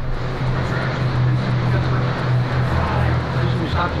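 Noisy mobile-phone recording of an airport gate area: a steady low hum under constant hiss, with faint, indistinct voices and a man's "uh" near the end.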